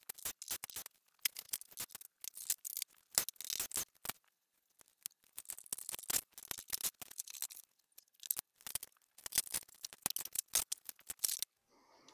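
Plastic golf-cart body panels clicking and rattling as the front cowl and nose are unclipped and lifted off, in quick irregular runs of sharp clicks with two short pauses.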